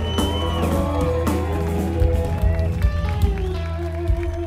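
Live rock band playing in concert, heard from the audience: held, bending lead notes over a steady bass line and drums. A high held note bends down about half a second in.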